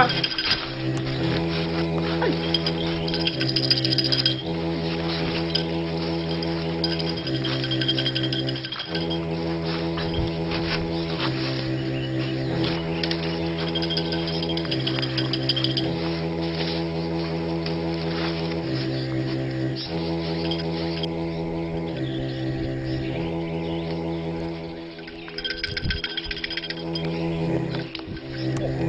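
Background score music: a sustained, droning keyboard-like chord with a low bass line that steps back and forth between two notes every second or two.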